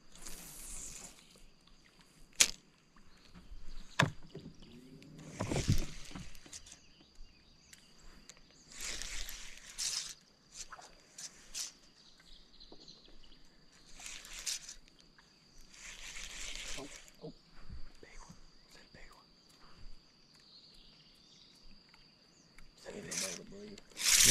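Spinning reel being cranked in short bursts of about a second each, several seconds apart, as a wacky-rigged worm is worked, with a few sharp clicks in between.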